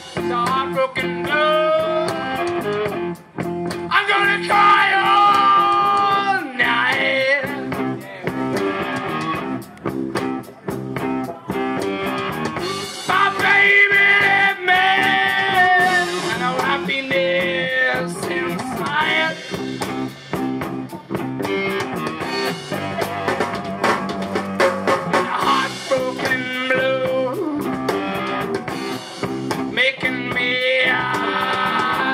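Live blues-rock band: a male singer holding wavering notes over an Epiphone electric guitar, bass guitar and drum kit.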